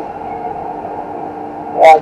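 Steady hum inside a tower crane cab, several even tones held without change while the crane moves its load. A voice over the radio cuts in near the end.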